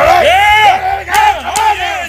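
Men yelling loudly over one another during a heavy lifting set, high-pitched shouts overlapping throughout.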